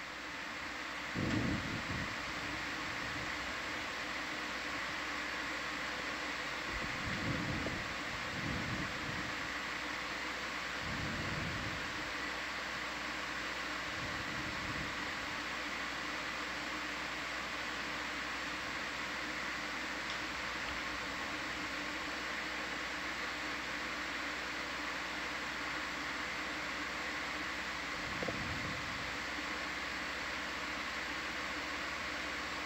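Steady hiss of an open control-room audio feed with a faint high whine. Several low, muffled thumps come in the first half, and one more near the end.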